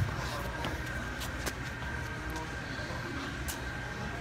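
Gym room tone: a steady low hum with a faint, thin high tone over it and a few faint clicks.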